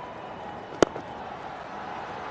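Cricket bat striking the ball once, a single sharp crack just before the middle, over steady stadium background noise.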